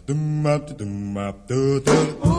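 Voices singing slow, held notes in a run of changing pitches, from a 1950s pop record.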